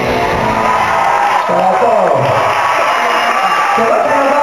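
Live concert sound: the band's music carrying on while the crowd cheers and whoops, with voices mixed in.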